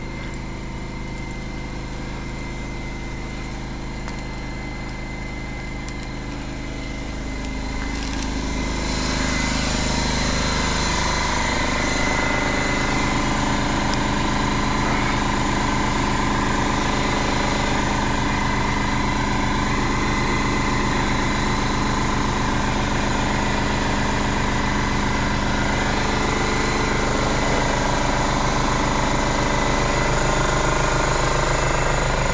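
A motor or engine running steadily at one pitch. It gets louder about eight seconds in and then holds steady.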